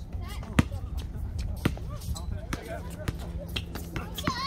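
Basketball bouncing on a concrete court: a few sharp, irregularly spaced bounces, the loudest about half a second in, with distant players' voices behind.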